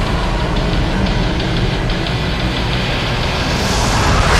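Film trailer soundtrack: music over a dense, steady low rumble, with a rising whoosh near the end.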